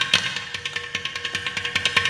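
Mridangam and ghatam playing a rapid, dense run of strokes in a Carnatic thani avarthanam (percussion solo), over a steady drone.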